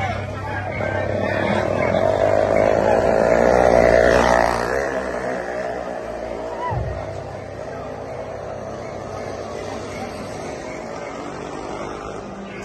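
A motor vehicle engine droning as it passes close, building to its loudest about four seconds in and then fading. A single thump comes nearly seven seconds in.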